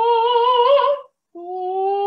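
A woman's voice sustaining a long sung note that slides slowly and smoothly upward in pitch. It breaks off about a second in, then starts again low and begins the same slow upward slide.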